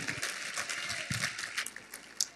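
Congregation clapping lightly after a prayer, scattered claps that thin out toward the end.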